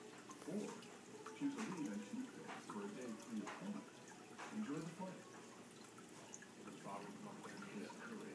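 Faint, indistinct voices talking in the background, with a few small clicks and drips of water.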